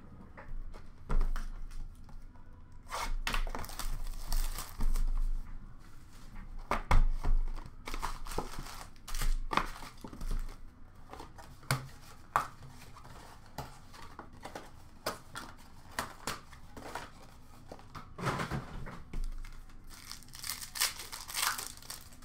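Hockey card pack wrappers being torn open and crinkled by hand, in irregular bursts of tearing and rustling.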